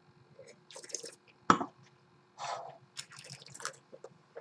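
A wine taster sipping and slurping white wine, pulling air through it in several short hissing draws. A sharp click about one and a half seconds in is the loudest sound.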